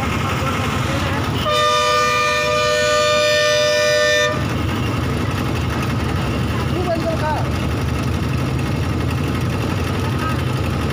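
Road traffic at a busy junction, with heavy trucks and other vehicles running steadily. About a second and a half in, a vehicle horn sounds one long steady blast of nearly three seconds.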